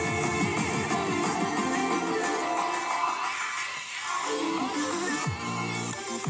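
Music playing from a portable Bluetooth speaker, streamed to it over Bluetooth from a CarPlay head unit.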